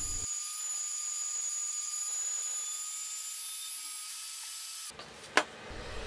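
Small band saw running with its blade cutting through a solid steel rod: a steady hiss with a few high steady tones. It stops abruptly about five seconds in, and a single faint click follows.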